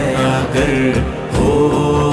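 Devotional vocal music: male voices in a drawn-out, wordless chant over a low drone, with a soft beat now and then.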